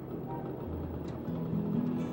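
Street traffic and scooter engine noise under background guitar music. The music's low notes drop out briefly near the start, leaving mostly the traffic noise.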